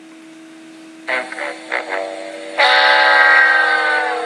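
A mournful 'wah-wah-wah-waaah' sad-trombone-style phrase: three short notes, then one long note that slowly sinks in pitch, over a steady low hum.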